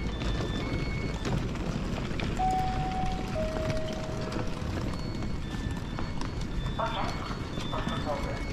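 Footsteps and luggage wheels clattering over platform paving as a crowd of passengers walks along, with scattered short electronic beeps. About two and a half seconds in, a two-note chime sounds, the second note lower, each note about a second long; a voice starts near the end.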